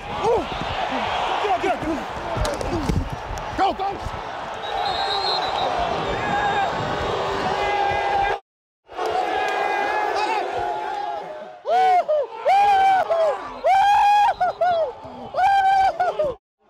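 Football players yelling and whooping in celebration over stadium crowd noise, which cuts out briefly a little past halfway. In the last few seconds come loud, drawn-out "ooooo" yells close to the microphone.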